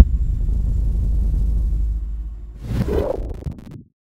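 Cinematic sound-design hit: a heavy low boom at the start, then a deep rumble for about two and a half seconds, then a whoosh that swells about three seconds in and cuts off suddenly.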